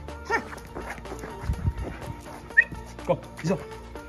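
Young German Shepherd giving a few short yelps and whines that fall in pitch, with one brief high chirp, over background music.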